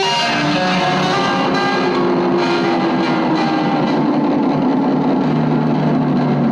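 Improvised noise music: electric guitar and effects pedals make a dense, distorted wash of sound, with a tone sliding slowly downward through it.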